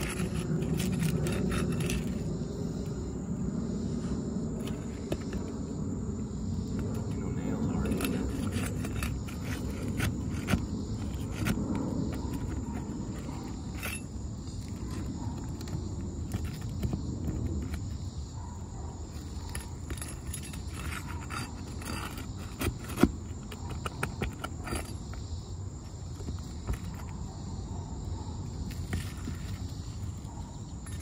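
A metal pry bar scraping and clicking against asphalt shingles as shingle tabs are worked loose and lifted, in scattered short strokes, with one sharper knock about 23 seconds in.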